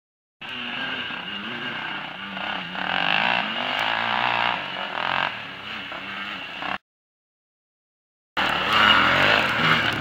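Off-road quad and dirt-bike engines revving and easing off, rising and falling in pitch. The sound cuts out completely for about a second and a half about two-thirds of the way through, then comes back louder.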